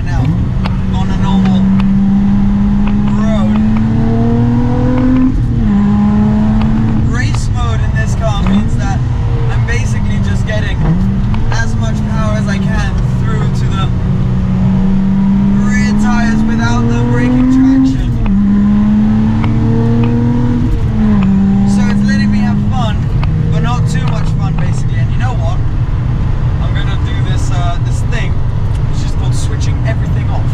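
The Lotus Exige 380's supercharged V6 engine is being driven hard on a track. It climbs in pitch under acceleration and drops sharply at each gear change, several times over.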